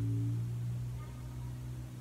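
A low steady hum, with a faint higher tone fading out in the first half second.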